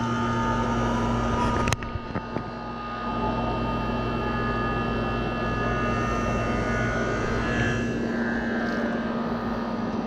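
Air-conditioning condenser unit running, its compressor and newly replaced condenser fan motor making a steady hum with fan noise. There is a sharp click about two seconds in, after which the sound drops a little for about a second before settling back.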